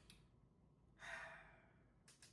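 Near silence with one breathy exhale from a person about a second in, fading away over about half a second.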